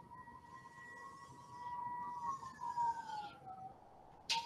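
Marker faintly scratching across a whiteboard, under a thin, steady high tone that slides lower from about halfway through and fades just before the end.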